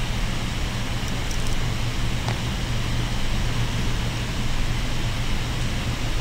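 Steady background hiss with a constant low hum, room or recording noise, with a faint tick a little past two seconds in.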